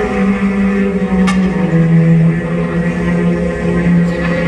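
Film-score music from an old Hollywood western: long held notes, the lowest one stepping down in pitch about two seconds in.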